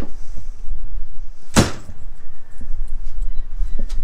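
A door slamming shut once, about one and a half seconds in, over a steady low rumble.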